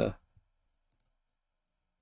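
The tail of a spoken word, then near silence broken by a faint click about a second in: a computer mouse clicking.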